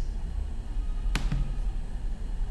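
Low steady hum with one sharp click a little past halfway and a fainter tick just after it: a computer control being clicked to run the program.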